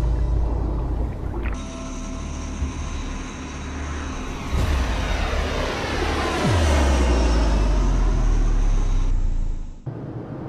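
A four-engine propeller aircraft flying low past, its engine drone sweeping down in pitch as it goes by about six and a half seconds in. A deep rumbling music score runs underneath.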